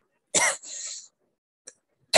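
A single short cough from a person, followed by a breathy hiss lasting about half a second.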